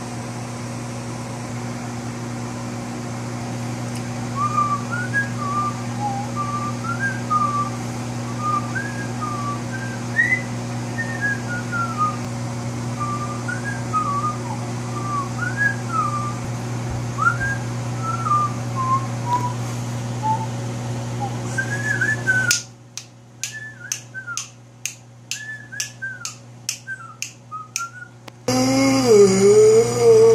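A person whistling a meandering tune over the steady hum of a running microwave oven. About 22 seconds in the hum drops out and a run of evenly spaced clicks follows while the whistling goes on.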